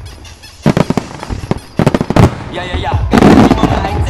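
Fireworks going off: a quick cluster of sharp bangs about half a second in, another cluster around two seconds, then a denser, longer burst just after three seconds.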